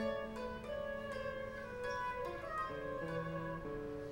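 Chamber ensemble playing an instrumental passage of the opera's accompaniment without voices: several held notes sound together over short plucked string notes, the pitches changing every second or so.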